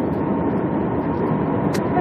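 Steady road and engine noise heard inside the cabin of a moving car, with one brief click near the end.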